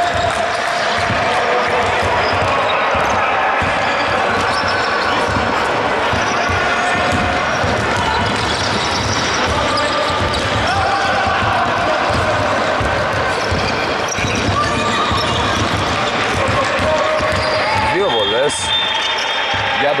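Basketball bouncing on a hardwood court amid players' voices echoing around a large hall.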